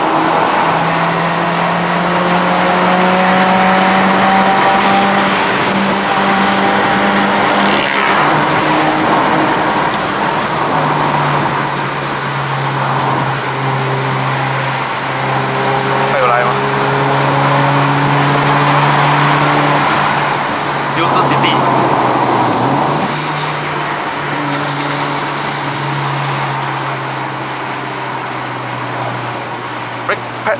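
Honda City's 1.5-litre i-VTEC four-cylinder engine pulling under load, heard from inside the cabin over road noise. The revs climb for about eight seconds, fall away at a gear change, then hold lower and steady, with a brief dip a little past two-thirds of the way through.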